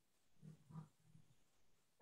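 Near silence: room tone, with two faint, brief sounds about half a second in.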